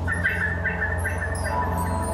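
Opening of a progressive rock song played live: a steady low drone with trilling, chirp-like high notes warbling above it.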